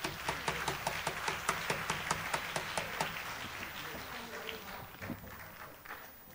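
A quick, even run of sharp hand claps, about five a second, over a murmur of voices in a concert hall. The claps are loudest in the first three seconds, then fade away.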